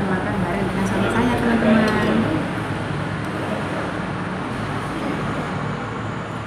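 Steady background noise of road traffic passing, with indistinct voices in the first couple of seconds.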